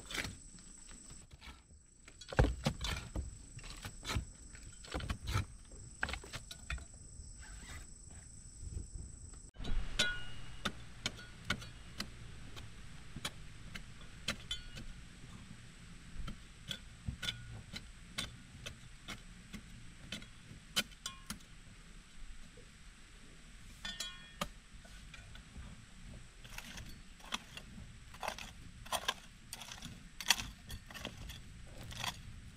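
A short-handled hoe digging into a dry earth bank: irregular sharp clinks and knocks as the blade strikes soil and stones, with scraping and crumbling dirt between strikes.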